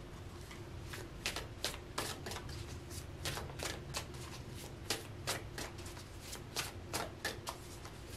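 A tarot deck being shuffled by hand: a run of irregular, crisp card snaps and clicks starting about a second in.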